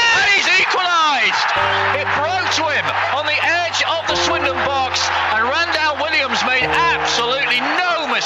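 Excited football commentary calling a goal, the voice high and sweeping, over background music with steady low bass notes that change pitch twice.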